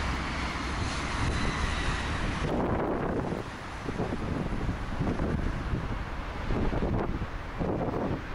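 Wind buffeting the built-in microphone of a Sony FDR-X3000 action camera, its wind noise reduction switched off, over steady road traffic noise. The higher traffic hiss thins out about two and a half seconds in, leaving low, gusty wind rumble.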